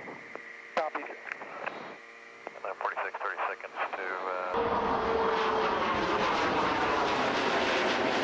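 Crackly radio voice communications with clicks and a steady high tone, then after an abrupt cut about halfway through, a louder steady rushing noise that continues to the end.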